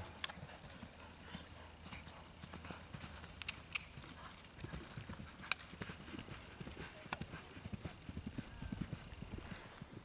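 Galloping horse's hoofbeats thudding on turf in a quick rhythm, denser and louder in the second half, with a few sharp clicks over the top.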